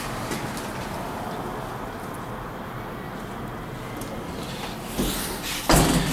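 Steady rumbling background noise, then a brief knock and rattle about five to six seconds in.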